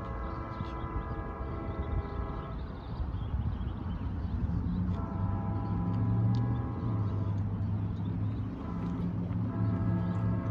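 Distant locomotive multi-chime air horn sounding the grade-crossing signal: two long blasts, a short one, then a final long one starting near the end. Under it, the low rumble of the approaching train's diesel engines builds from a few seconds in.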